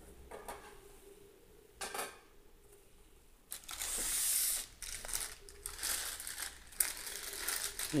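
Crinkling and rustling handling noise that starts about three and a half seconds in and goes on irregularly, after two brief light sounds before it.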